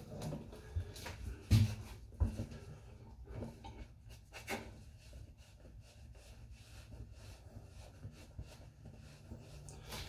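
Cloth towel rubbing and patting a face dry: soft, quiet rubbing, with a couple of knocks in the first few seconds.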